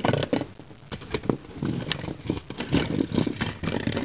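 Plastic Lego robot models scraping and clattering across a cardboard arena floor as they are pushed by hand, with scattered sharp clicks and knocks.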